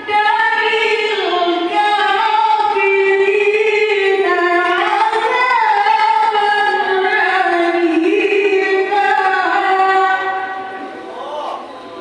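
A woman's melodic Qur'an recitation into a handheld microphone, with long held notes and ornamented turns in pitch. The phrase ends about ten seconds in, and the voice falls away.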